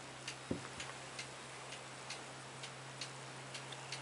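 Faint regular mechanical ticking, roughly three ticks a second, over a steady low hum, from the small motorised stand turning a paper figure.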